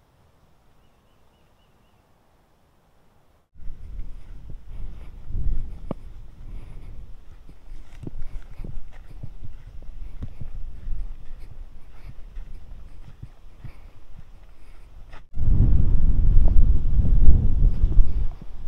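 Silence for the first few seconds, then footsteps crunching on a dry dirt and leaf-litter trail, irregular steps over a low microphone rumble. Near the end a much louder low rumble from wind on the microphone takes over.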